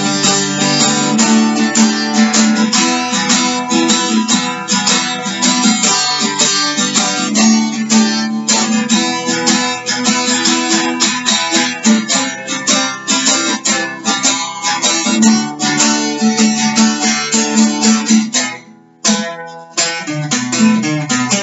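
Acoustic guitar strummed steadily with no singing, breaking off briefly about a second and a half before the end and then starting again.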